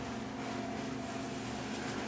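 Steady hum and hiss of a room's air-conditioning unit running, with a low, even tone under it.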